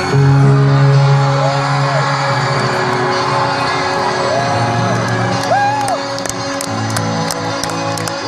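Live band music from a concert stage, recorded from within the crowd, with sustained low chords and a few held notes, over crowd noise and scattered whoops.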